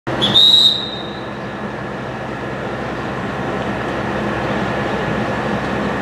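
A ZSSK class 671 double-deck electric multiple unit stands at the platform with its equipment running as a steady hum. A short, high, clear whistle sounds near the start.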